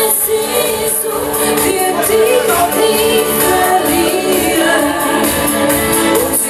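Live pop performance: a woman singing into a microphone over a full band backing with a steady beat.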